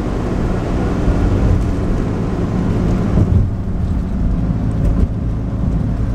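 Car interior noise while driving: a steady low engine and road rumble, with the higher road hiss thinning out about three and a half seconds in.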